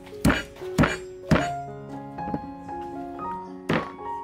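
Meat cleaver chopping through raw beef ribs onto a round wooden chopping board: three heavy chops about half a second apart, then one more near the end. Background music plays throughout.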